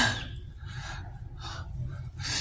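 A man's sharp, noisy exhale right at the start, close to the microphone, fading over about half a second, followed by fainter breaths.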